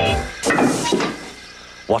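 A short noisy burst with a couple of knocks, lasting under a second, as the train jolts to a halt with its brakes hard on from a leaking brake pipe.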